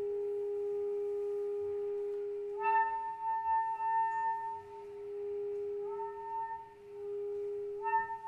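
Contemporary chamber music for woodwinds and cello: one long held tone, with higher sustained notes that enter sharply about two and a half seconds in, slide in again around six seconds, and enter once more near the end.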